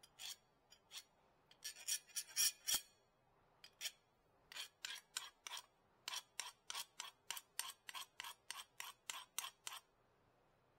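A metal hand file rasping in short strokes against a small part held in the hand. A few strokes come first, then a quick cluster about two seconds in, then a steady run of about three strokes a second until just before the end.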